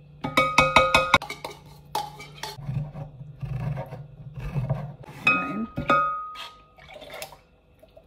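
Metal food cans and a tin lid clinking against a glass mixing bowl while condensed and evaporated milk are emptied and opened: a quick run of ringing clinks near the start, then two more a little past halfway, with quieter handling in between.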